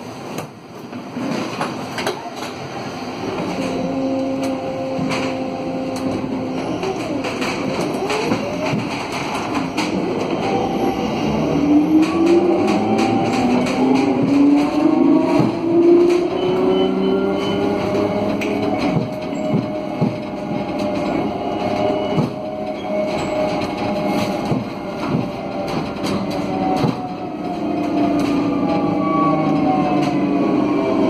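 Alstom Aptis electric bus's rear-wheel traction motors whining, heard from inside the cabin: the whine rises in pitch as the bus pulls away from the stop, then keeps rising and falling with its speed. Road noise and light rattles from the cabin sit under it.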